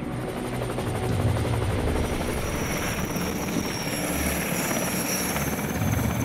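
Helicopter running with its main rotor turning, a steady rhythmic rotor beat over turbine noise.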